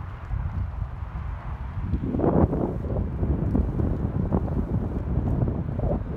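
Wind buffeting the microphone while riding a BMX bike, a rumbling rush that grows louder about two seconds in.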